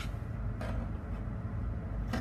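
A steady low background hum, with faint rustles and a soft click from a fabric sleeve piece being folded and handled on a table with scissors.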